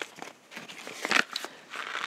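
Paper seed packet of sweet peas being handled and shaken, with seeds tipped out into a palm: a few light clicks, then a steady rustle near the end.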